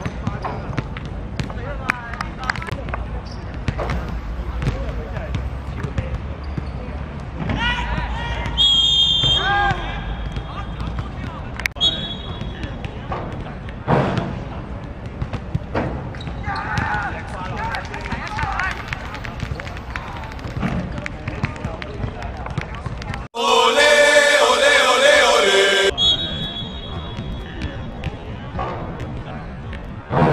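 Youth football match on artificial turf: players shouting and the ball being kicked, with short thuds throughout. Short shrill blasts of a referee's whistle come around the middle and again near the end. A loud stretch of shouting comes shortly before the end.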